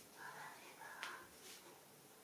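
Faint whispering, very quiet, with a single soft click about a second in.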